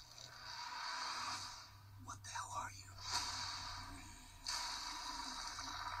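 Faint movie-trailer soundtrack playing in the room, with noisy effects that swell and fade and a brief faint voice about two seconds in.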